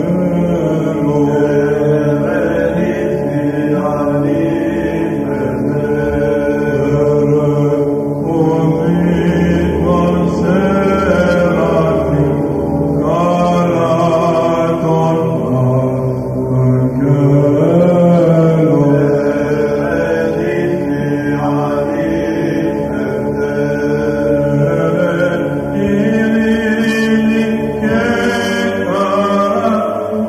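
Greek Orthodox church hymn, chanted slowly by voices in long held notes that glide gently from pitch to pitch.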